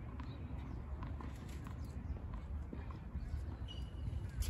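Quiet tennis-court ambience between points: a steady low rumble with a few faint, scattered light taps and no racket strikes.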